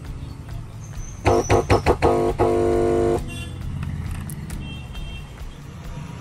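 Music played through a car subwoofer amplifier into a test speaker: a short keyboard-like phrase of a few quick notes and one held note, about one to three seconds in, over a steady low hum. The amplifier is playing without cutting out into protection mode.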